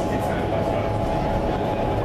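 Steady rush of air from an indoor skydiving wind tunnel in operation, with a constant hum running under it.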